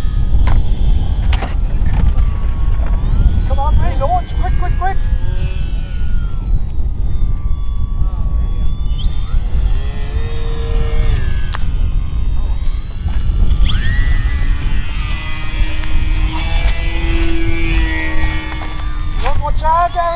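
Model aircraft motors whining, their pitch gliding up and down; one steps up sharply about nine seconds in and holds for a couple of seconds, and several more sound together later on. Heavy wind rumble on the microphone lies under it all.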